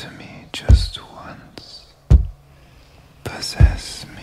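Whispered voices over slow, deep drum thumps that come about every second and a half, three of them.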